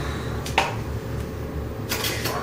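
A sharp click about half a second in and another near the end, from a long level being handled against a plaster wall, over a steady low hum.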